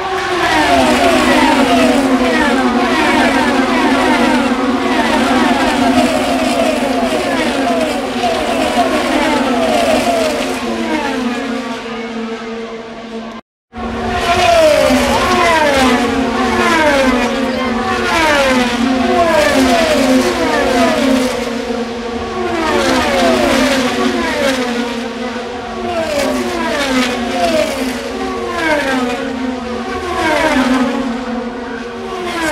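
A pack of IndyCars, 2.2-litre twin-turbo V6 race engines, passing the grandstand one after another at racing speed, each engine note falling in pitch as the car goes by. The sound cuts out for a moment a little before halfway, then the passes continue.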